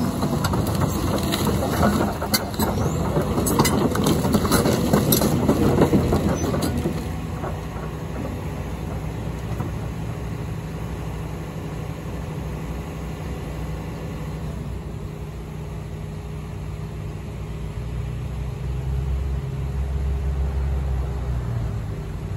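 Caterpillar excavator's diesel engine running while it demolishes a house: dense crunching and clattering of breaking debris for about the first seven seconds, then the engine running steadily on its own as a low drone that grows louder near the end.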